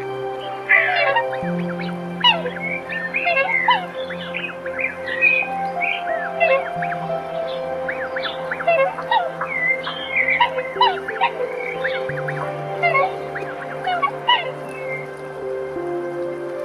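A flock of swans calling, many short overlapping calls coming thick and fast through most of the stretch, over soft sustained background music whose chords change every few seconds.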